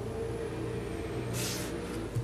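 A steady low hum with one short scrape about one and a half seconds in, as a pencil and a clear acrylic ruler are worked over a Kydex sheet on a cutting mat.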